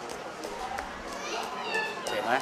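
Indistinct background chatter of several voices, with high-pitched children's voices rising toward the end.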